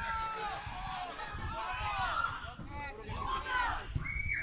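Voices calling out during a football match, several overlapping shouts carrying across the pitch, over a low rumble of wind on the microphone.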